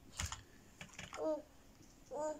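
A sharp light click, then two fainter clicks, followed by one short babbled syllable from a young child.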